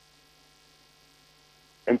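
Low, steady electrical hum in a gap between words, with speech starting again near the end.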